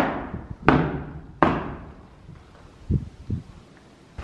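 Three sharp knocks about two-thirds of a second apart, rapped on a wall or door in an empty room and echoing after each one. They are followed near the end by two soft, low thuds.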